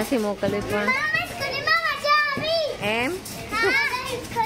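Young children's high-pitched voices calling out and shouting in play, several calls rising in pitch.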